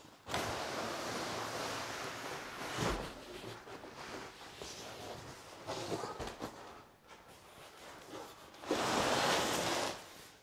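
Cardboard cartons and plastic packaging being handled: a long scraping rustle, a knock about three seconds in, then quieter rustles and a louder burst of rustling near the end.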